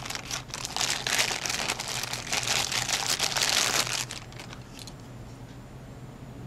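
Clear plastic bag crinkling as a wall power adapter and its plug piece are pulled out of it. The crackling is dense for about four seconds, then drops to quieter handling.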